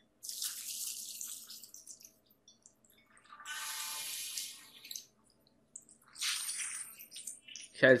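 Anime sound effects playing from the episode: three separate rushing, hiss-like surges of noise, each one to two seconds long, over a faint steady hum.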